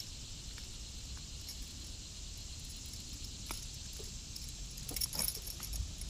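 A few light metallic clicks and jingles, one about halfway through and two close together near the end, from a buzzbait's wire and blade being handled while a caught largemouth bass is unhooked. A faint steady high hiss runs underneath.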